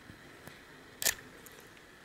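A small screwdriver gives one sharp click about a second in as it is brought to a trim pot on the pedal's circuit board, over faint room tone with a couple of much smaller ticks.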